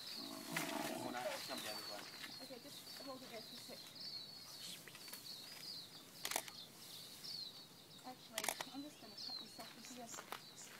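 Short, high, chirping bird calls repeat throughout, with a muffled voice in the first second or so. Several sharp knocks come through, the loudest about six and eight and a half seconds in.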